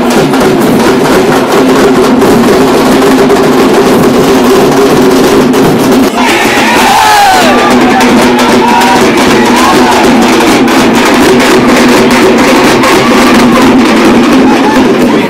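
Loud, fast festival drumming over a steady low drone, with crowd noise. From about six seconds in, higher wavering voices or calls rise over the drums.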